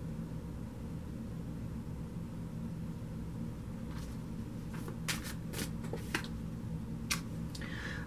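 Tarot cards being handled and drawn from the deck: a scatter of short card clicks and slides starting about halfway through, over a low steady room hum.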